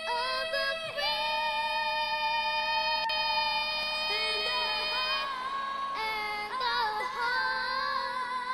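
Two young girls singing the national anthem at the same time, their voices overlapping slightly out of step. A long note with vibrato is held from about a second in, then the melody moves on.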